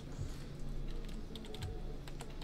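A few scattered keystrokes on a computer keyboard, fairly faint.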